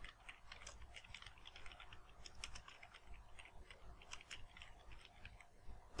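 Faint typing on a computer keyboard: a quick, uneven run of key clicks.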